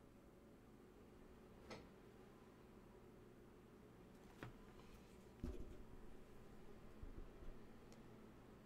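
Near silence: room tone with two faint clicks and a brief low rumble a little past halfway.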